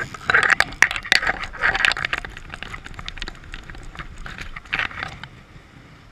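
Irregular crackling and scraping close to the microphone, dense in the first two seconds and again around five seconds in: rustling of clothing and grass as the angler moves. Under it, the steady rush of the river.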